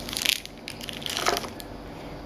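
Clear plastic bag crinkling and crackling as it is handled in the hand, in two short bursts: one just after the start and one a little past a second in.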